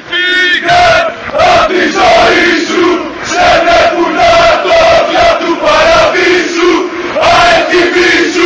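Football crowd chanting a song in unison: many male voices singing held, rising and falling phrases.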